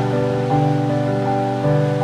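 Slow, gentle instrumental background music with sustained notes that change about every second, over a faint steady hiss of waves.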